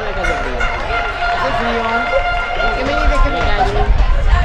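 Several voices shouting and calling over one another across a football pitch, players and people at the pitch-side, with a few drawn-out calls, over a steady low rumble.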